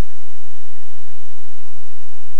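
Steady hiss with a low, even hum underneath: the background noise floor of a voice recording.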